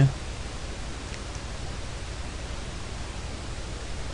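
Steady, even background hiss of the recording, with no other sound, in a pause between spoken sentences.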